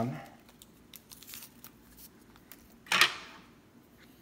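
Packets of alcohol prep pads rustling and clicking faintly as they are picked through, then one short, loud rip about three seconds in as a packet is torn open.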